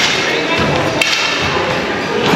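Busy room noise with indistinct background voices, and a single sharp knock about a second in.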